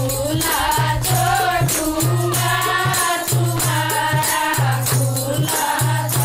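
Women's chorus singing a Haryanvi folk song (lokgeet) in unison, with a steady beat of hand claps and a rattling wooden hand clapper, over a low steady note that comes and goes with the phrases.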